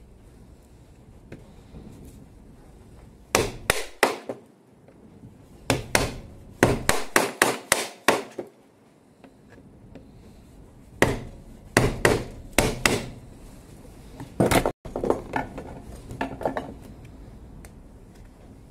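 A hammer tapping on a screwdriver held against the brush cap of a Makita cordless angle grinder. It comes in runs of sharp strikes with pauses between, as he tries to work loose a cap and brush holder that have melted fast into the plastic housing.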